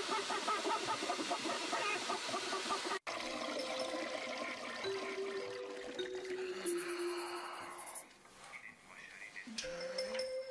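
A hair dryer blowing hot air into a cage of chickens, with hens clucking, cuts off sharply about three seconds in. Soft music with long held notes follows.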